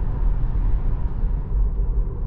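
Steady low rumble of road and tyre noise inside the cabin of an electric Tesla Model 3 cruising at about 50 mph, with no engine sound.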